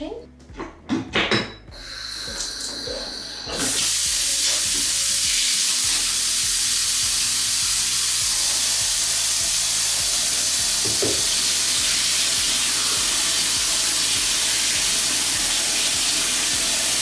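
Bath tap running water into a bathtub: a steady, even hiss that starts about three and a half seconds in. Before the water comes on there are a few knocks and a cough.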